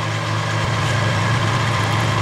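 Clausing horizontal milling machine running with its arbor and cutter spinning, a steady motor hum. A rougher low rumble joins about a third of the way in.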